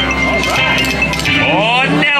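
Brian Christopher video slot machine playing its electronic spin sound effects as the reels spin: steady chiming and clinking tones, with sweeping rising and falling tones in the second half.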